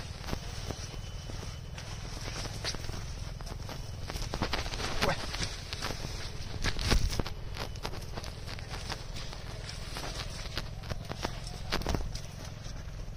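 Mustard plants rustling and crackling as a person pushes and walks through a dense flowering mustard crop, with irregular footsteps, over a steady low rumble.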